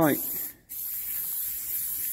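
Aerosol can of Halfords lacquer hissing as it sprays a light coat onto a car wing. The spray cuts off for a moment about half a second in, then starts again and keeps going.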